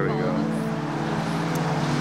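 Road traffic noise, a steady hiss, under background music that holds low sustained notes.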